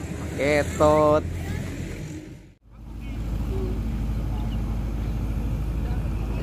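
A voice speaks briefly over a steady low hum, which fades. After a sudden cut, a steady low rumble takes over.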